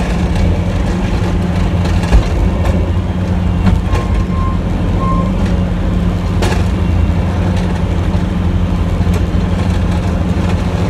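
Snowplow truck's engine running steadily, heard from inside the cab, with a few sharp knocks as the plow works. Two short beeps about a second apart sound around the middle.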